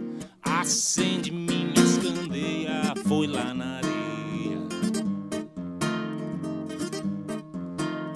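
Nylon-string classical guitar played live in chords and plucked notes, with a man singing over it. The playing drops out briefly about half a second in, then comes back with a strong strum.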